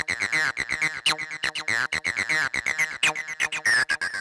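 303 acid bass synthesizer playing a fast sequenced line of short notes with a resonant filter, distorted by the Indent 2 saturation plugin. A few accented notes stand out brighter, and the saturation reacts to them.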